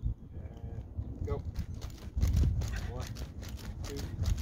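Quick, evenly spaced footsteps on dry dirt as an athlete drives forward in a resistance-band speed harness, starting about a second and a half in, with a low rumble of effort or wind about two seconds in.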